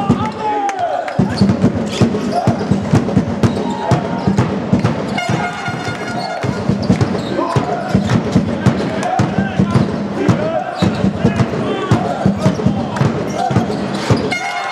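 Basketball game on an indoor wooden court: a rapid run of ball bounces from about a second in, with sneaker squeaks and voices in the hall.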